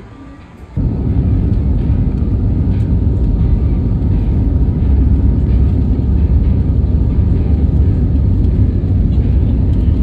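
Jet airliner heard from inside the cabin beside the wing while it rolls on the ground: a loud, steady engine and rolling rumble that starts suddenly about a second in.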